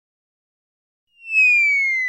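Silence, then about a second in a loud high whistle starts and glides slowly downward in pitch: a cartoon falling-whistle sound effect.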